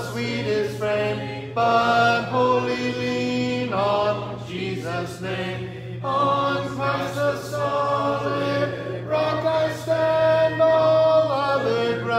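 Church congregation singing a hymn a cappella, many voices together in sustained, pitched phrases with brief breaks between lines.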